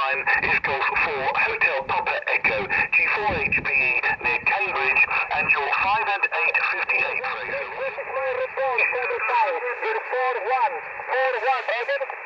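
A station's voice received over the air on the Elecraft KX2 transceiver and heard through its speaker. The speech is thin and band-limited, with a light hiss of band noise, as is usual for single-sideband voice reception.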